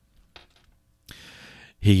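A pause in a man's close-miked talk: a few faint mouth clicks, then a soft breath drawn in, and his voice starts again near the end.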